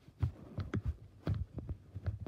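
Silicone pop-it fidget toy having its bubbles pressed by a finger: a quick, uneven run of soft, dull pops, about seven in two seconds.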